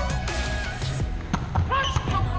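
Background pop music playing over indoor court sound, with a few sharp smacks of a volleyball being hit during a rally, the first about a second in.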